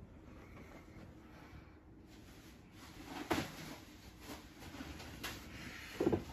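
Quiet room tone with a low hum and a few soft handling knocks and clicks, the loudest a little past halfway.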